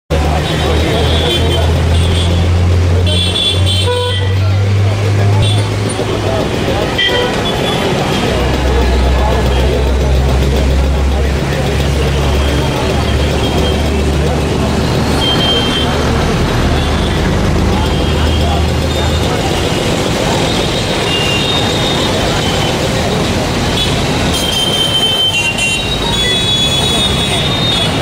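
Road traffic noise, with a vehicle engine running, several short horn toots and voices in the background.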